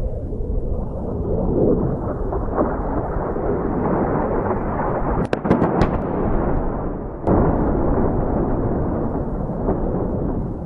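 Distant air-strike explosions: a continuous low rolling rumble, with a cluster of sharp cracks about five seconds in and a sharp blast about seven seconds in, after which the rumble swells.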